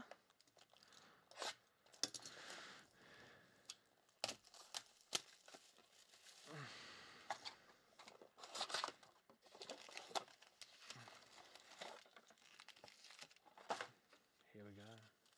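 Faint crinkling and tearing of plastic shrink-wrap as a sealed trading-card hobby box is unwrapped and opened, then the rustle of foil card packs being taken out and stacked, with scattered light clicks throughout.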